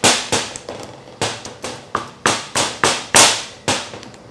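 Wooden pestle pounding a thick batter of glutinous rice flour, green tea and mashed tofu in a ceramic bowl: about ten sharp strikes, two or three a second and unevenly spaced, crushing the lumps of tofu that remain.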